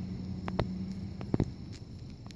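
A few short clicks of hard plastic toy figures knocking together as a rider figure is set onto a toy horse, two close together being the loudest, over a steady low hum that stops a little past halfway.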